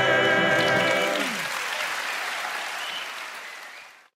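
A held final chord of the song cuts off about a second in, and a theatre audience's applause takes over and fades steadily away.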